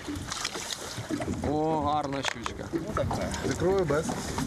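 Brief, indistinct men's voices on a small fishing boat out on the water, with a few short knocks and clicks from gear being handled in the boat.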